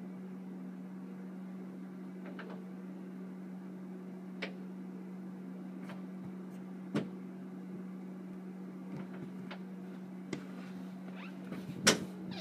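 A steady low hum of one unchanging pitch, with a few faint scattered clicks and knocks. Near the end come louder footsteps on the hard floor close by.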